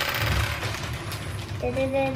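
Small plastic game pieces rattling and clattering as a hand rummages through them, strongest in the first half-second and then lighter.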